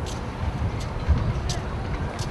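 Wind buffeting the camcorder microphone: a gusty, uneven low rumble, with a few brief hissy ticks above it.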